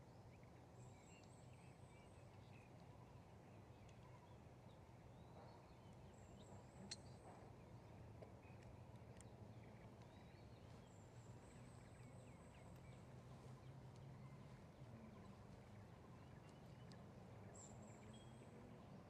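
Near silence: faint outdoor ambience with a low steady hum, broken four times by a faint thin high-pitched call about a second long, and one faint tick about seven seconds in.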